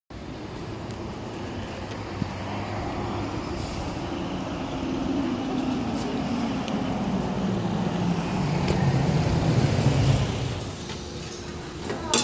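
Street traffic noise. A passing vehicle's engine grows louder with a slowly falling pitch, is loudest near the end, then fades.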